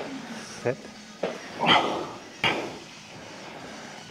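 A man breathing out hard and grunting with effort while pulling a heavy rep on a plate-loaded row machine, with a couple of sharp knocks from the machine.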